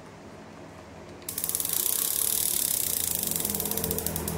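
A conventional sea-fishing reel being cranked by hand, its mechanism giving a rapid, even ratchet clicking that starts about a second in.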